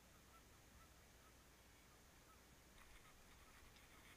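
Near silence, with faint distant waterfowl calls, likely geese, in a quick series in the first second or so. A few faint ticks follow near the end.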